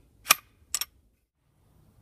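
Metallic clicks of the Grendel R31 carbine's bolt being drawn back in its receiver during field stripping: one sharp click, then a quick double click about half a second later.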